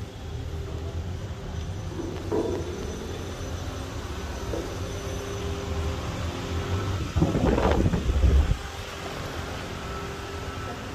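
Steady low rumble and hum of background noise, with a louder rumble lasting about a second and a half near the end.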